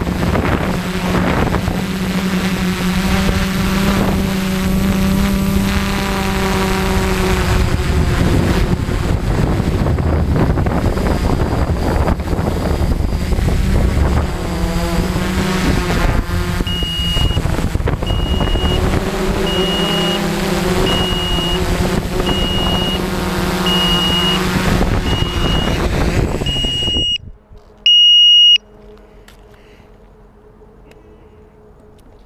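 450-size quadcopter's brushless motors and propellers whining in flight, the pitch rising and falling with throttle. A little over halfway in, a high electronic beep starts repeating about every three-quarters of a second. Near the end the motors cut off suddenly on landing, followed by one longer, louder beep, then a faint steady hum.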